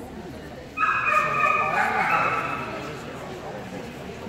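A dog whining: a high, drawn-out whine begins suddenly about a second in and fades out within two seconds, over background chatter.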